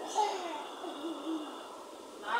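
A toddler's wordless vocal sounds: a few short calls gliding up and down in pitch during the first second and a half, then fading off.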